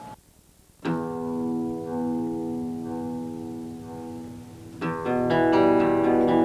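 Acoustic guitar: after a brief silence, a chord is struck about a second in and rings out, slowly fading. Near the end a second, louder strum starts a picked passage.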